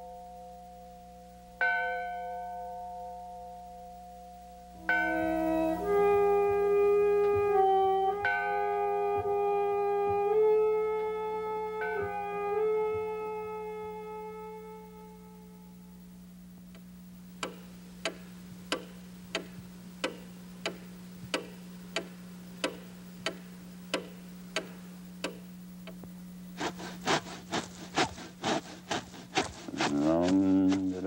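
Bell-like chimes: two single strikes ringing out and fading, then a short tune of held notes that dies away. A run of sharp clicks follows, steady at under two a second and quickening near the end.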